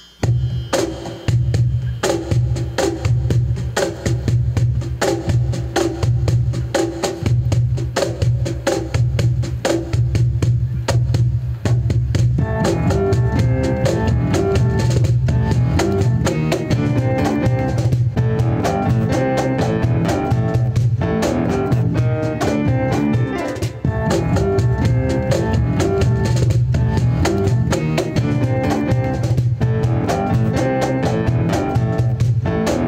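Live instrumental progressive rock from a small band: a bass line and a steady percussion pulse, with more instruments such as guitar and synthesizer filling in the middle about twelve seconds in.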